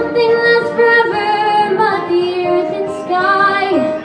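A young female voice singing long held notes that step between pitches and slide down near the end, over acoustic guitar.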